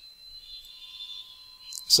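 A faint, steady high-pitched electronic whine, joined by a weaker lower tone about halfway through. A man's voice starts speaking at the very end.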